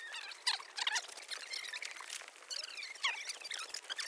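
Fast-forwarded recording of voices and surroundings, turned into rapid, high-pitched, chipmunk-like squeaky chatter with no low sound at all.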